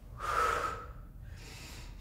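A woman's strong exhale, about half a second long, as she drives up out of a front-rack dumbbell squat, followed by a fainter breath.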